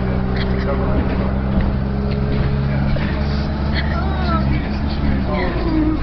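Bus engine running with a steady low drone, heard from inside the bus; the drone's steady note breaks off about five seconds in.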